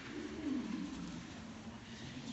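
A low human voice making one falling hum or 'ooh', about a second long, loudest about half a second in, over the shuffle of people walking on a concrete floor.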